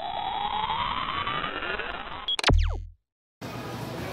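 Synthesized intro sound effect: a tone with many overtones sweeps steadily upward, then ends in a sharp hit with a quick falling zip and a short low boom, cut off dead. After a brief silence, steady store background noise comes in.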